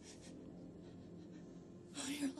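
A woman's short, faint breath at the very start, then a quiet low steady hum.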